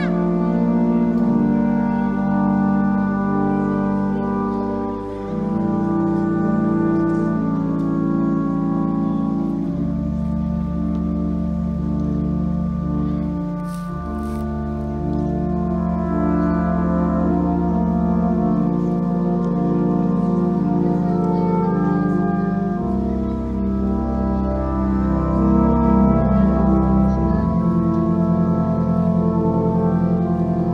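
A Russian horn orchestra of single-note hunting horns playing slow, sustained chords with a blended, organ-like tone. Each player holds one note, and the chords change every few seconds. A deep bass note comes in about ten seconds in.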